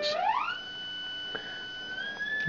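MFOS analog voltage-controlled oscillator's ramp-wave output, an electronic tone with overtones that glides up in pitch over the first half second as its frequency is turned up toward about 2 kHz, then holds steady. This is the oscillator being set high before its high-frequency trim is adjusted during calibration.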